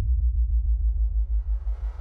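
Electronic intro music under a logo animation: a deep, pulsing bass rumble, with a faint noisy swell starting to build about halfway through.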